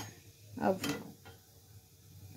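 Curry leaves and mustard seeds frying in a little hot oil in a steel kadhai, giving a faint, quiet sizzle, with one short sharp click a little under a second in.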